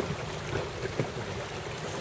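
Steady wind and water noise out on open water, with wind buffeting the microphone.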